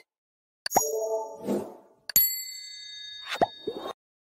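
Subscribe-button animation sound effects: a pop with a short tone about a second in, then a click and a bell-like ding that rings on a steady high tone for over a second, with a few short clicks near the end.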